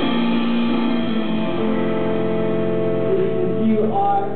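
Small live worship band, acoustic guitar with a drum kit, playing the last bars of a song with long held chords.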